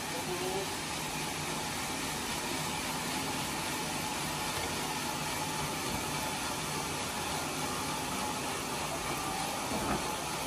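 Sawmill machinery running steadily, not cutting: a constant hum with a hiss over it.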